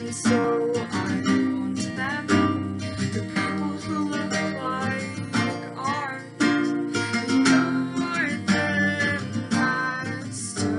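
A woman singing while playing an acoustic guitar.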